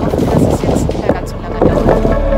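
Wind buffeting a phone microphone outdoors on a sailboat, under a woman's voice.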